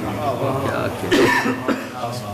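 A cough about a second in, with a man's voice around it.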